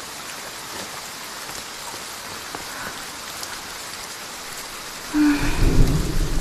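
Steady rain falling. Near the end a low rumble of thunder comes in and the sound grows louder.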